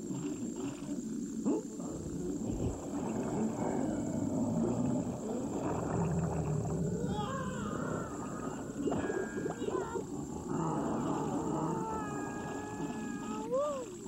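Animal-like creature vocal sound effects for an animated cartoon fish: rough, throaty noises with several wavering calls that glide in pitch. Near the end, one call swoops up and back down.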